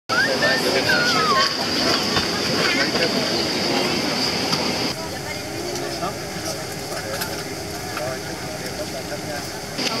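People talking inside an airliner cabin over steady cabin noise with a high-pitched whine. The sound changes abruptly about five seconds in.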